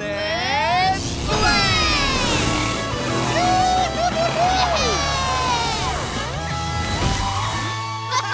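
Cartoon monster truck speed-boost sound effects: a rising whoosh, then sweeping zooms over upbeat music, with excited shouts mixed in.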